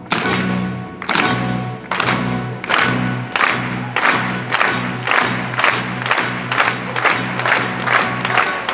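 Joropo band with harp and orchestra playing loud accented chord hits, about a second apart at first and speeding up steadily until they come two or three times a second.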